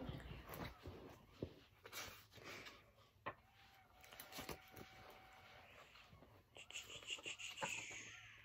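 Quiet handling noises: scattered light taps and rustles of things being moved and sorted, with a longer rustle near the end.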